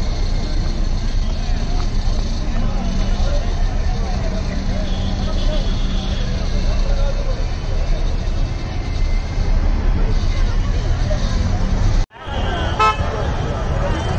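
Busy street crowd at night: many people talking, with vehicles running and car horns tooting. The sound cuts out completely for a moment about twelve seconds in.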